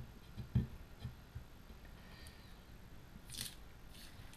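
Masking tape being peeled off the edge of a freshly painted brake disc while the paint is still tacky: soft handling knocks, then a short crisp rip of tape about three and a half seconds in.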